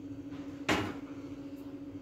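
Biscuits dropped into a stainless-steel mixer-grinder jar: one sharp clatter about a third of the way in, over a steady low hum.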